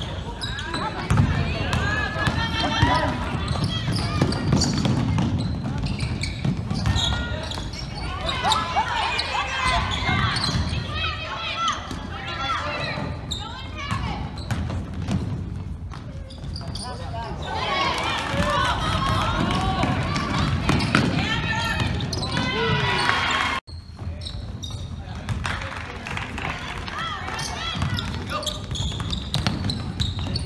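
Basketball being dribbled on a hardwood gym floor during a game, with players' and spectators' voices calling out. There is a brief sudden break in the sound about two-thirds of the way through.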